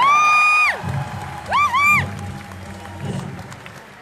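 Two high, drawn-out shouted whoops in a hype call-and-response: one at the start and a second, two-part one about a second and a half in. They sit over a low background of crowd noise that dies down toward the end.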